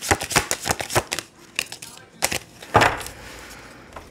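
A deck of tarot cards being shuffled by hand: a quick run of light clicks as the cards slip and tap together, thinning out after about a second, then one louder tap and a soft rustle near the end.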